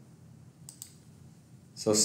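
Two quick clicks of a computer mouse a little under a second in, picking a font size from a dropdown list.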